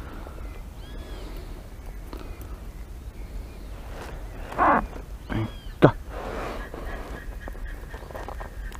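A few bird calls, the loudest about four and a half seconds in, with short whistled notes around it, over a steady low rumble of wind on the microphone. A sharp click comes near six seconds in.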